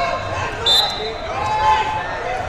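A referee's whistle, one short blast about two-thirds of a second in, starting the wrestling bout, over the steady chatter of voices in a large hall.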